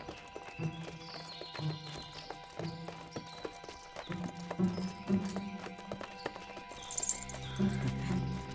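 A horse's hooves clip-clopping at a walk on a dirt road, in uneven strikes, over background music.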